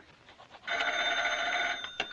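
Desk telephone bell ringing once, a steady ring of about a second that stops short as the receiver is lifted.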